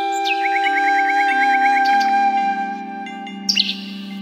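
Calm background music: a long held flute note over a lower tone that steps down in pitch, with bird chirps and a quick trill mixed in.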